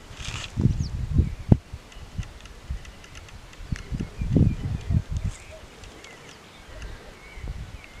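Low, irregular buffeting of wind on the microphone, with a faint, distant human scream.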